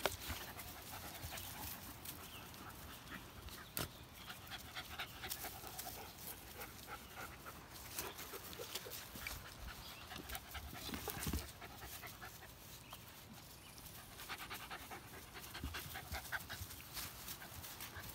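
A small shaggy dog panting, faint, with scattered small clicks through it.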